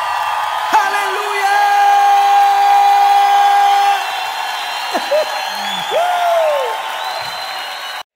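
A live worship crowd cheering and whooping as a song closes, with a long steady held note in the first half and several rising-and-falling whoops later. The sound cuts off abruptly at the end.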